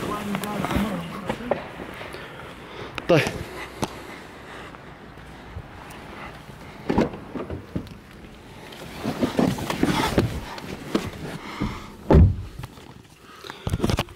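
Handling noise, clothing rustle and knocks as a person climbs out of one new car's back seat and into another's, with a single spoken word about three seconds in and a heavy low thump near the end.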